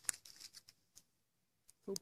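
Hands handling a small handheld device: a sharp click and rustling scrapes at the start, then quiet until a voice speaks near the end.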